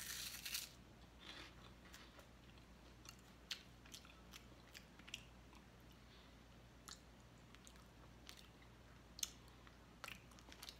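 A person bites into a seasoned puffed corn snack with a loud crunch, then chews it quietly, with faint crunches now and then.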